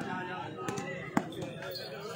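A volleyball struck hard by a player's hand during a rally: one sharp slap about a second in, over the chatter of spectators.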